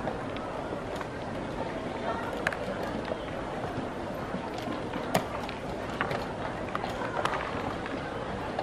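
Wooden chess pieces being set down on the board and the chess clock's buttons being pressed during a fast blitz game: sharp clicks and taps every second or so, the loudest about five seconds in, over a steady background of room noise.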